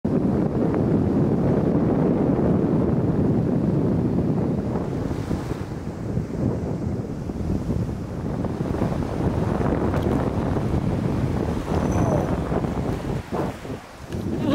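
Wind buffeting the microphone on an open shore, a loud, steady rumble, with small waves washing onto the beach beneath it.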